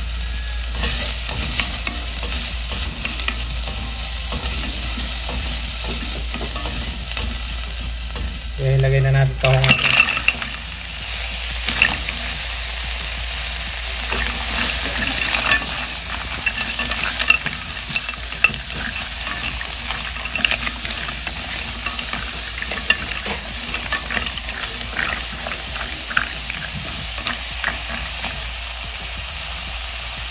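Sizzling in a stainless steel pot as onion, garlic and ginger sauté in oil, then green mussels frying and being stirred with a spatula, their shells clicking against the pot. A brief louder burst comes about nine seconds in.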